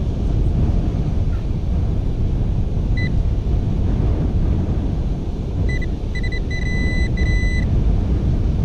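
A handheld pinpointer beeping as it is probed through freshly dug beach sand. There is one short beep about three seconds in, then a quick run of beeps near the end that merges into a steady tone as it closes on a metal target. Heavy wind rumble on the microphone runs throughout.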